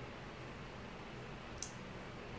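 Quiet room with faint steady background noise and one short, sharp click about one and a half seconds in, from fingers handling a small plastic toner bottle.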